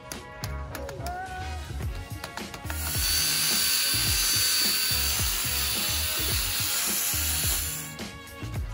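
Cordless DeWalt drill spinning a foam buffing pad, working rubbing compound into a plastic headlight lens; it runs steadily from about three seconds in until just before the end. Background music with a steady beat plays throughout.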